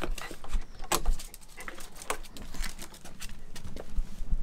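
A small dog scuffling around a sneaker it is playfully biting, with scattered knocks and scuffs of shoes on a stone floor.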